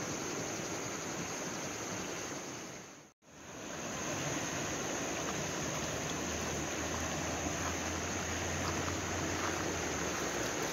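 Steady rushing of a river running high in mild flood, with a constant high-pitched insect drone over it. The sound fades out briefly about three seconds in and comes straight back.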